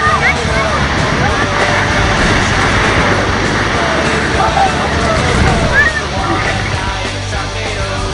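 Ocean surf washing and breaking around people wading, with a wave crashing over them around the middle. Young people's shouts and squeals come over the water noise.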